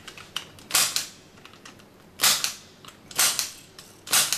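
Punch-down tool snapping three times, about a second apart, after a faint click, as it seats network cable conductors into a patch panel's terminal block and trims off the excess wire.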